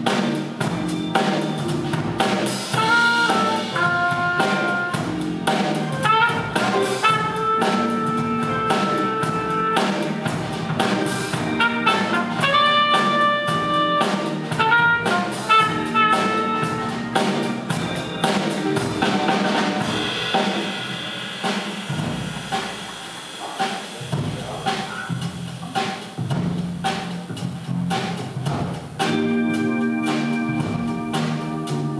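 Live jazz band playing: trumpet and saxophone carry held melody notes over electric guitar, bass and a drum kit. Past the middle the horns drop out and the band plays more quietly, then the horns come back in near the end.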